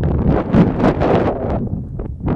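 Wind buffeting the microphone: a loud, gusting rumble and rush that rises and falls throughout.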